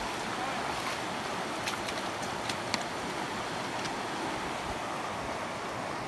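Shallow, fast mountain creek rushing steadily over a rocky bed while hikers wade through it, with a few faint clicks about two to three seconds in.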